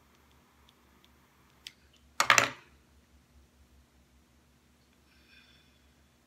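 A few faint ticks, then a short, sharp clatter of clicks about two seconds in from a plastic butane utility lighter being handled while an incense stick is lit.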